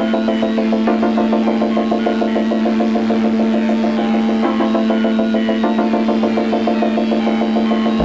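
Electronic music: an Ensoniq SQ-80 synthesizer playing a fast repeating sequence of short notes over a steadily held low note.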